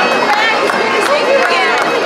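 Welcoming crowd talking and calling out, many voices at once, with a bagpipe's steady drones running underneath.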